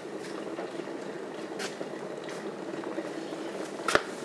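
Electric kettle heating water towards the boil: a steady rumbling, bubbling hiss with faint crackles. A sharp click comes just before the end.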